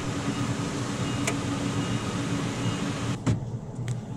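A car moving slowly through a turn: a steady hum and fan-like hiss of the engine and air conditioning, with a faint click about a second in and a short knock near the end.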